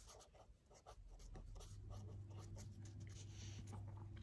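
Faint scratching of a felt-tip pen writing on paper in short, quick strokes, over a low steady hum.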